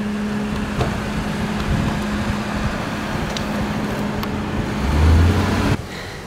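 Parked police patrol car idling with a steady hum over traffic noise. A louder low rumble swells near the end, then the sound cuts off abruptly.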